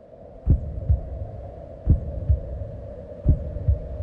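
A slow, low heartbeat, three double thumps (lub-dub) about a second and a half apart, over a steady hum.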